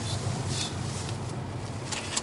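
Cabin noise of a Mercedes C250 CDI under way: the 2.1-litre four-cylinder diesel's steady low hum mixed with road and wind noise, with a brief hiss about half a second in.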